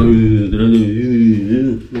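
A man's voice holding one drawn-out, wavering vocal sound, like a long sung or hummed vowel, that breaks off just before the end.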